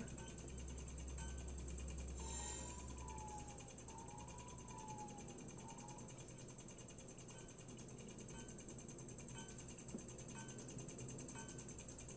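Faint countdown timer ticking about once a second, played through the monitor's speakers. A soft wavering tone sounds under it between about two and six seconds in.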